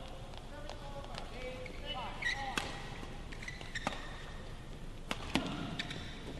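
Badminton rally: several sharp racket strikes on the shuttlecock, the strongest from about halfway in, with brief high squeaks of shoes on the court.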